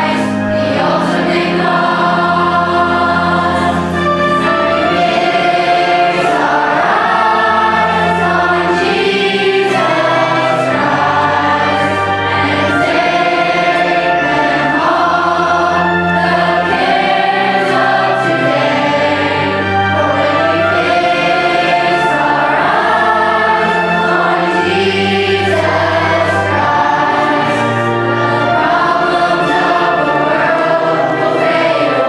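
Children's choir singing a song in unison over an instrumental accompaniment with a bass line and a steady beat.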